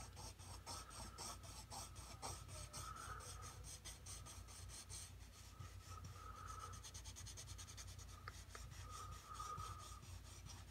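Pencil scratching on toned tan sketch paper in quick, short, back-and-forth shading strokes, about four or five a second, pressed hard to lay down dark tone. Faint.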